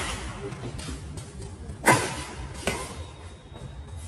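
Badminton racket strikes on a shuttlecock during a rally: a sharp, loud hit about two seconds in and a lighter return hit under a second later, each with a brief ring from the strings.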